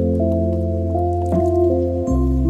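Background instrumental music: soft held notes that step from one to the next over a steady low bass, with a short blip about a second and a half in.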